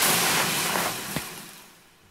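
Action-film sound effect: a loud rushing whoosh that fades away over about a second and a half, with a single sharp tap just after a second in.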